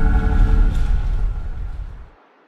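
Closing music sting of an animated channel bumper: a held chord over a deep rumble. The chord stops just under a second in and the rumble then fades out.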